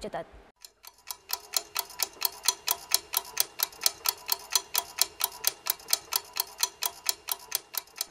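Quiz-show countdown-timer sound effect: rapid, evenly spaced ticking over a faint steady tone, starting about a second in.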